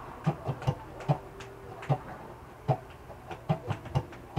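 Acoustic guitar played without singing, in a rhythmic strumming pattern of sharp accented strokes, the strong ones about every 0.8 seconds with lighter strokes between.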